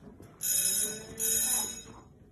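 Two bursts of high, trilling electronic ringing, each a little over half a second long, with a brief break between them.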